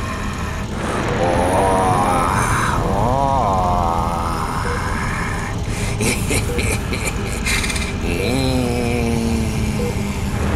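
A person's wordless vocal sounds, pitch sliding up and down in a few long moans, over a steady low rumble, with a short run of rapid clicks about two-thirds of the way through.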